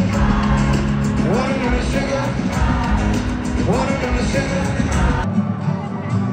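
Live pop-rock band playing with a male lead vocal singing, recorded on a phone amid a stadium crowd. Near the end the deep bass suddenly drops out as the music cuts to another stretch of the show.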